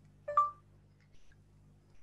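BlindShell Classic 2 phone giving a single short electronic beep about a third of a second in, the prompt that it has started listening for a spoken command.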